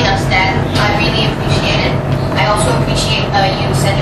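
Indistinct voices that come and go in short phrases, over a steady low hum.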